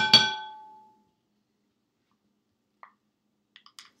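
A metal spoon clinking against a stainless steel bowl: two quick clinks at the very start that ring with several clear tones and die away within about a second, followed by a few faint taps near the end.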